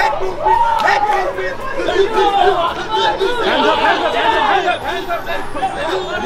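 Several men's voices talking and calling out over one another, a babble of overlapping speech with no clear words.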